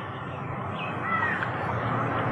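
Steady outdoor background noise with a short bird call, a couple of thin curving notes, about a second in.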